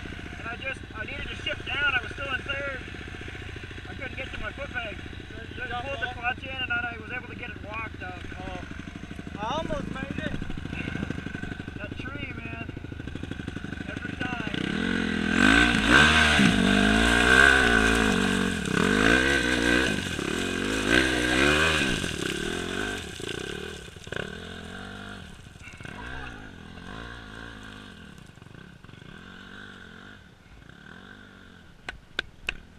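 Honda dirt bike engine revving close by. From about halfway in it gets much louder, its note rising and falling again and again as it is throttled up, then fades as it pulls away.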